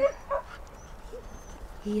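A dog whimpering: one short, high whine about a third of a second in, then a faint, quieter sound near the middle.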